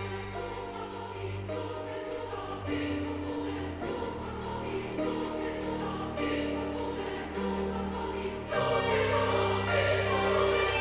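Background music: a choir singing held chords over orchestral accompaniment, swelling louder about eight and a half seconds in.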